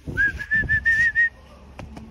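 Someone whistling a quick run of about seven short chirping notes that edge slightly upward in pitch, stopping just past the first second.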